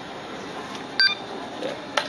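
A single short electronic beep from a supermarket checkout about a second in, then a sharp click near the end.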